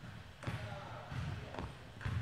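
A basketball being dribbled on an indoor hardwood court, a few separate bounces.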